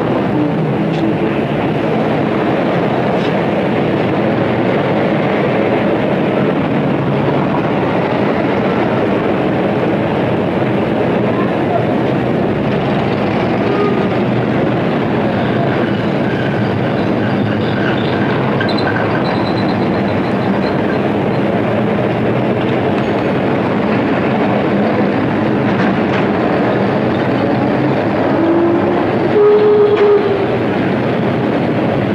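Steady loud din of street traffic and a train running on the elevated railway overhead. A short tone sounds near the end.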